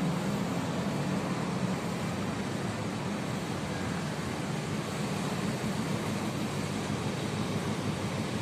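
Steady city street ambience: a continuous hum of distant traffic with no distinct events.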